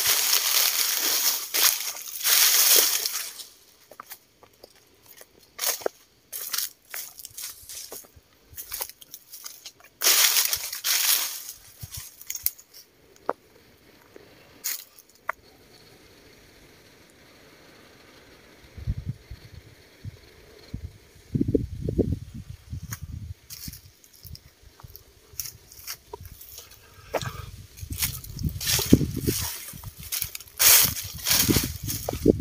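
Dry fallen leaves and brush rustling and crunching underfoot in bursts, with scattered small snaps of twigs. From about two-thirds through, gusts of wind buffet the microphone with irregular low rumbling.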